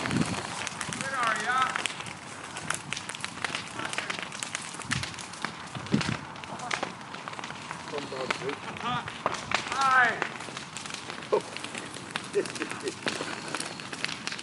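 Footsteps and rustling of people moving through dry grass and brush, with many small snaps and crunches. Brief voices come in twice, about a second in and again around ten seconds in.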